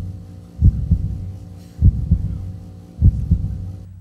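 Slow backing beat: deep thumps in pairs, a strong one followed by a weaker one, repeating about every 1.2 seconds over a steady low droning tone.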